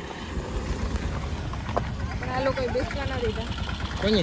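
A car's engine running close by as SUVs drive past, a steady low rumble, with people talking over it from about halfway through.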